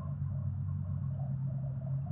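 A steady low hum holding an even pitch, with no other distinct sound.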